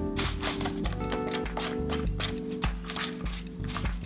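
Background music: sustained chords that change about twice a second, with short clicks running through it.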